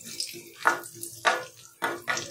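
A wooden spatula scrapes and stirs chopped dry fruits frying in ghee in an aluminium kadhai, in about three strokes a little over half a second apart.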